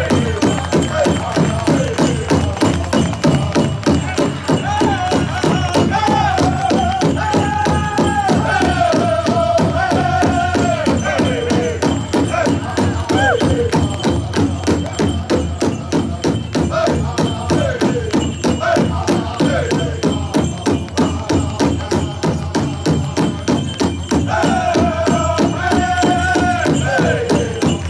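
Native American powwow-style drum and singers: a steady, even drumbeat under high-pitched chanted song whose phrases fall in pitch. The sung phrases come strongest about a quarter of the way in and again near the end.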